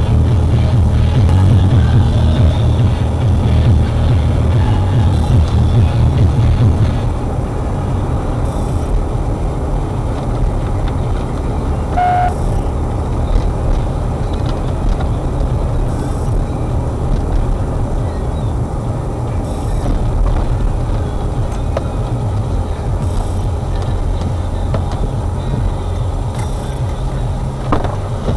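Car cabin noise while driving slowly: a steady low rumble of engine and tyres on a wet road, heard from inside the car. The rumble eases after about seven seconds, and a brief short tone sounds about twelve seconds in.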